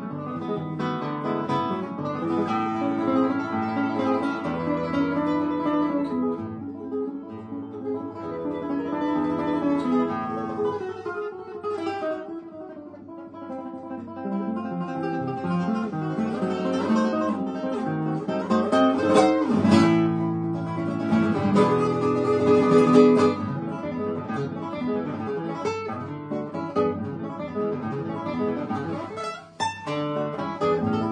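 Solo classical guitar with nylon strings, played fingerstyle: a continuous piece that thins out and quietens a little before the middle, then swells into a louder, fuller passage past the middle.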